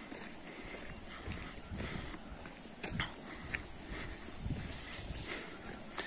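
Footsteps on a wet gravel road: quiet, irregular crunches and thumps, with a couple of sharper clicks about three seconds in.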